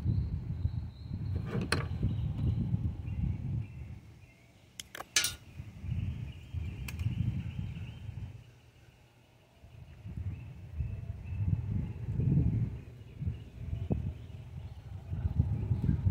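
Metal pliers twisting a thin aluminum wire tight around a small maple branch, tightening a tourniquet until it bites into the bark: a few sharp metallic clicks spread through, over a low uneven rumble.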